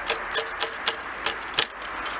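Rapid metallic tapping on a shotgun, about four taps a second, each with a short ringing ping, slowing near the end: knocking a stuck spent shotgun shell loose from the chamber.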